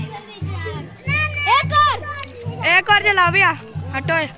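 Children's high-pitched voices calling and singing in short bursts over music with a steady bass line.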